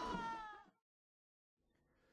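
A held, slightly rising high note fades out within the first half-second, then silence.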